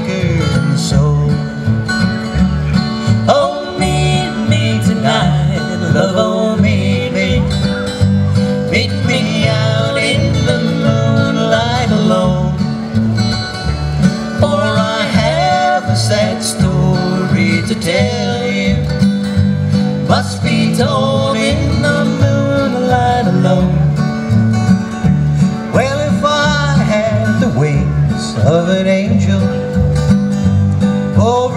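Bluegrass instrumental break: an acoustic guitar picks the melody over an upright bass plucking a steady bass line.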